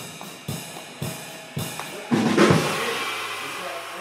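A band led by a drum kit, with bass and keys, plays accented hits about twice a second. About two seconds in comes a bigger, louder hit that rings out and slowly fades.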